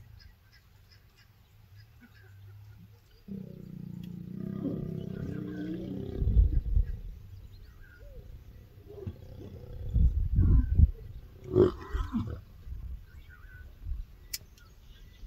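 Mating lions growling: a long, wavering low growl begins about three seconds in. Several loud snarls follow in the second half, as copulation ends and the pair break apart.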